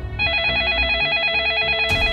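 Landline telephone ringing with a fast electronic warbling trill that starts a moment in.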